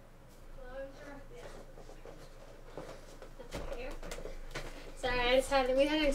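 A woman's voice, faint about a second in and then close and loud in the last second, with a few light clicks and rustles in between.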